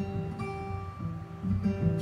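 Solo acoustic guitar played alone in a short instrumental fill between sung lines of a country-blues song, several plucked notes ringing one after another.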